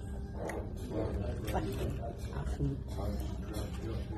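Dining-room background: a steady low rumble under indistinct murmured voices, with a few faint clicks.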